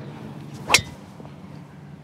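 Golf driver striking a ball off a tee: one sharp metallic crack about three-quarters of a second in, with a short ring after it.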